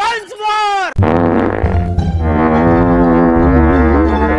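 Edited comedy audio: a man's bending, shouted exclamation in the first second, then from about a second in a long, low buzzing drone like a brass horn, held as a steady note over background music.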